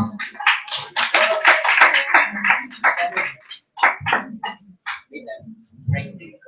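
Small audience applauding: dense clapping at first that thins to a few scattered claps and dies out about five seconds in.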